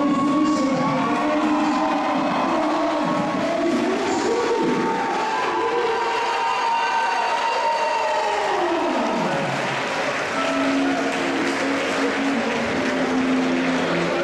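Music playing over crowd applause and cheering, which swell as the winning boxer's arm is raised about eight seconds in.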